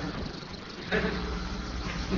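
Indistinct voices in a meeting room over a steady hiss and low hum. One voice starts up about a second in.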